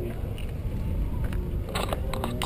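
Low steady rumbling noise, then a few short clicks and knocks near the end as a hand handles the hood-mounted GoPro camera.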